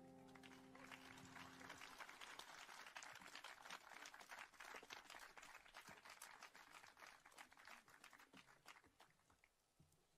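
The last held chord of piano and strings dies away in the first two seconds, then faint, thin applause from a small audience of scattered clapping that tails off near the end.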